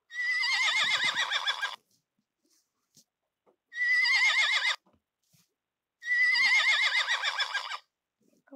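Stock horse whinny sound effect played three times: a whinny of almost two seconds, a shorter one of about a second, then another of nearly two seconds, each with a quavering pitch.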